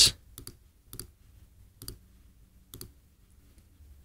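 Computer mouse button clicks: about five short, sharp clicks at uneven intervals in the first three seconds, as colours are picked in an on-screen colour picker.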